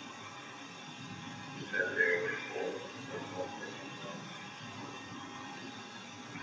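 Steady hiss of a poor-quality interview tape, with a brief, faint, mumbled voice about two seconds in.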